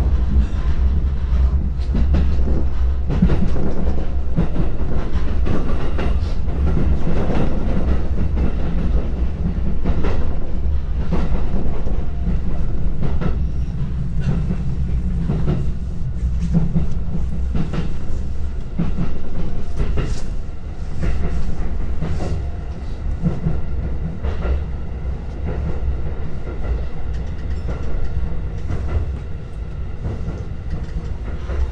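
JR Joban Line commuter train running, heard from inside the car: a steady low rumble with the clack of wheels over rail joints, getting a little quieter over the last several seconds as the train slows into a station.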